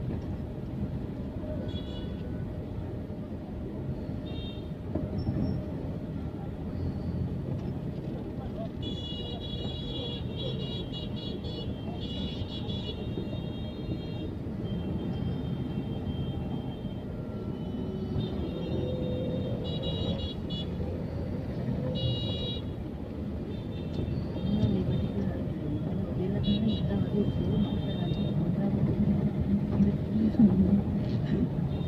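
Busy street traffic: a steady rumble of engines and voices, with short high-pitched vehicle horns beeping again and again. The horns cluster from about nine seconds in to fourteen, again around twenty seconds, and near the end.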